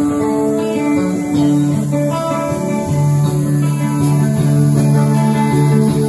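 Live band playing an instrumental intro: clean electric guitar picking over sustained keyboard chords, with deeper held notes coming in about three seconds in.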